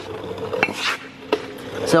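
Boots stepping and scuffing on a concrete floor, with a few sharp clicks and a short scrape.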